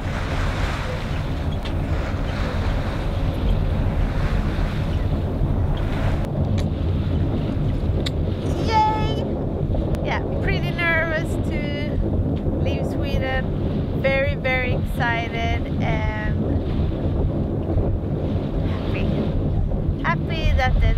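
A sailboat's inboard engine running steadily under wind noise on the microphone. From about eight seconds in, a woman's high voice laughing and exclaiming for several seconds.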